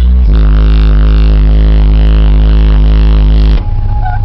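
Music played very loud through four 15-inch FI BTL subwoofers, heard inside the car: a long held note with many overtones over very deep bass, which stops abruptly about three and a half seconds in as the music moves on.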